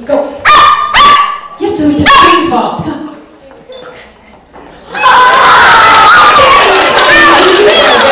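A poodle barks three sharp yips in the first two seconds. About five seconds in, a loud, continuous clamour of many children's voices begins.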